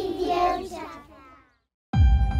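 A group of young children singing together, fading out after about a second and a half. After a brief silence, loud electronic music starts suddenly right at the end.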